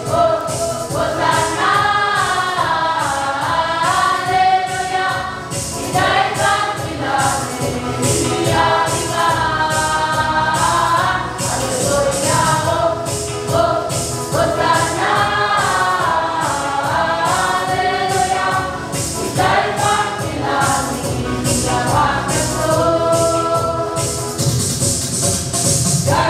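A group of voices singing a gospel song together, with a tambourine shaking a steady beat.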